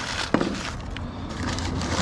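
Cardboard box flaps and crumpled newspaper packing rustling and scraping as an item is pulled out of a packed box, with one sharp knock about a third of a second in.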